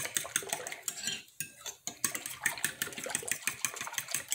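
A metal fork beating a thin egg-and-milk batter in a glass mixing bowl, its tines clicking rapidly against the glass, with a couple of brief pauses.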